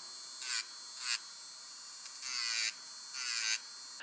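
Electric nail drill with a sanding-band bit running with a faint, steady high whine, broken by four short rasping bursts as the band grinds the edge of a glued-on gel nail capsule, blending it into the natural nail.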